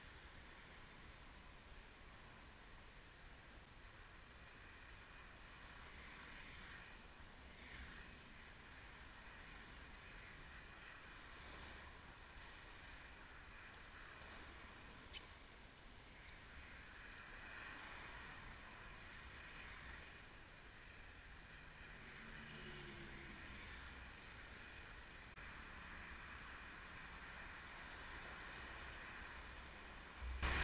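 Near silence: faint, steady outdoor hiss, with a single tiny click about halfway through.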